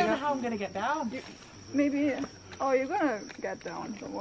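People's voices in short stretches of talk and exclamation, over a thin steady high insect drone from the rainforest.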